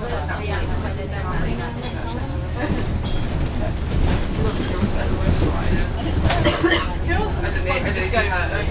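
Cabin sound of a moving double-decker bus from the upper deck: a steady low engine drone under indistinct passenger chatter.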